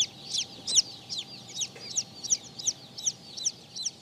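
A Blue Silkie Bantam chick peeping: a steady string of short, high chirps, each falling in pitch, about three a second.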